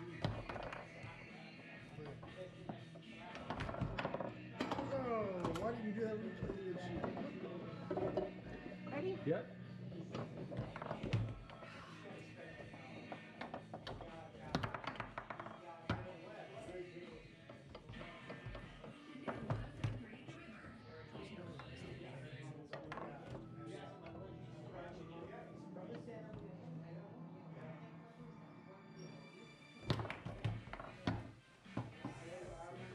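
Foosball being played: scattered sharp clacks of the ball striking the plastic men and the table, with rods knocking, over background music and voices in the room.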